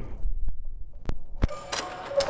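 A few sharp metal clicks, then ringing metallic clangs near the end as an empty steel barbell is set back into the bench rack's hooks, which sit a little too high.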